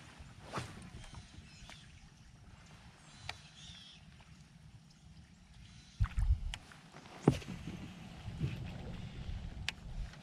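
Quiet water ambience with a few faint high chirps, then, about six seconds in, wind buffeting the microphone and several sharp knocks of gear against a fishing kayak.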